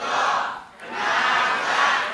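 Many voices chanting together in unison, in swelling phrases with a short break about three-quarters of a second in.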